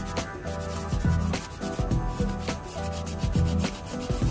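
Abrasive sanding sponge rubbing back and forth over a small diecast model car body in repeated scratchy strokes, with background music playing underneath.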